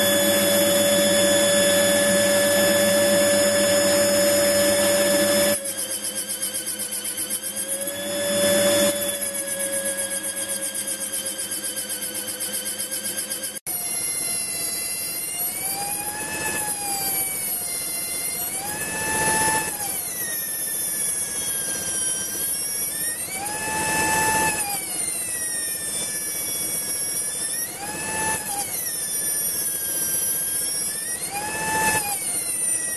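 Small air die grinder with a little grinding wheel, mounted on a lathe tool post, grinding the face of a medium carbon steel washer while the lathe turns in reverse. Its high whine holds steady at first. From about halfway on, the pitch sags and recovers every four to five seconds as the wheel bears on the washer.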